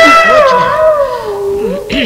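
Snake charmer's pipe (magudi) playing: a held drone note under a reedy melody note that slides down and settles on a lower pitch.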